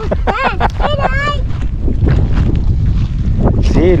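Wind buffeting the camera microphone, a steady low rumble, with a short high-pitched voice about half a second in.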